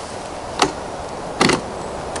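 Two sharp metal clicks about a second apart from the latch of a hard telescope carrying case as it is handled to open.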